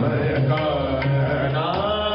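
Sikh kirtan: a male voice singing gurbani in a gliding, melismatic line, accompanied by sustained bowed string instruments and a few sparse tabla strokes.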